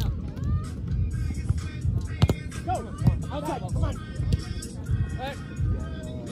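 Background music with people's voices, and one sharp slap of a hand striking a volleyball about two seconds in.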